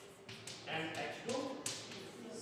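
Chalk tapping on a blackboard while equations are written, under a man's speaking voice, with a sharp chalk tap near the end.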